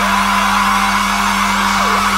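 Live electronic rock music in a stripped-down passage: one steady low droning note held under a loud wash of hissing noise, with faint pitch sweeps sliding through and no drums.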